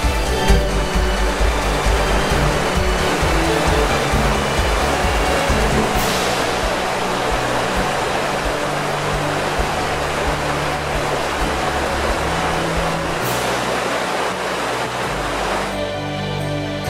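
Rushing river water running fast over rocks in shallow rapids, a steady dense hiss, with background music underneath. The water sound cuts out shortly before the end, leaving the music alone.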